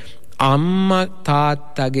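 A Buddhist monk's voice delivering his sermon in a chant-like sing-song: a long held syllable that rises in pitch about half a second in, followed by shorter held syllables.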